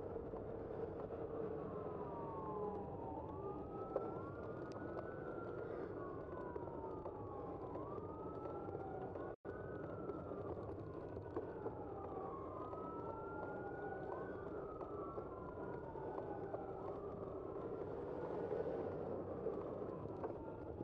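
An emergency-vehicle siren wailing, its pitch sliding slowly up and then down again every two to three seconds, with the sweeps overlapping one another.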